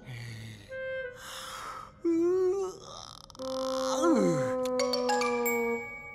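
A cartoon young stegosaurus yawning and grunting as he wakes, with one short wavering sound about two seconds in and a longer one falling in pitch about four seconds in. Orchestral score runs underneath, with held notes and high chime-like notes in the second half.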